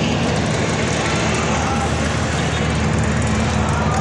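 Small motorcycle engine running steadily while riding, under a constant rush of road and wind noise.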